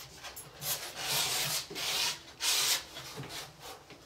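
Palette knife scraping and smoothing oil paint across a canvas: about five rasping strokes of varying length, the longest about half a second.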